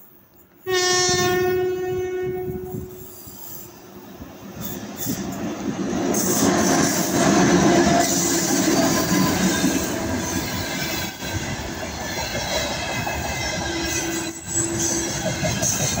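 An electric freight locomotive's horn, presumed to be the 2ES6's, sounds one blast of about two seconds shortly after the start. The wagons of the container train follow, their wheels rumbling and clattering over the rails as the noise builds and stays loud.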